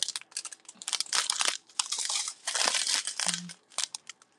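Clear plastic bags of diamond-painting drills crinkling and rustling as they are handled, in irregular spurts of crackling with short pauses between.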